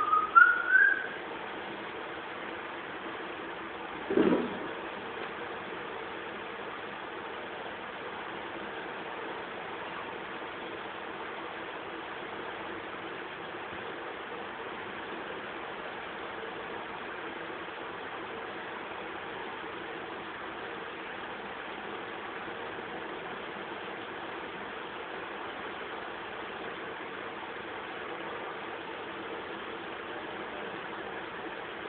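Steady, featureless hiss. In the first second there is a brief warbling, rising whistle-like tone, and about four seconds in a short low sound.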